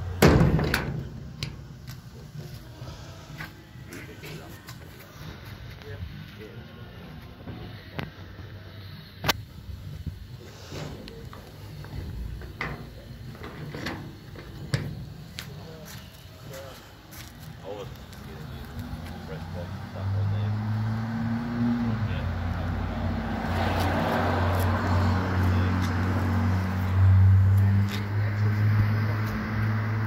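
Metal knocks and clunks from the aluminium trailer's doors and compartments being handled, the loudest a sharp knock right at the start. From about twenty seconds in, a low steady engine hum runs underneath.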